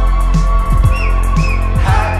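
Live band playing an instrumental passage: bass and a kick drum about twice a second under sustained guitar, with short high gliding notes about a second in.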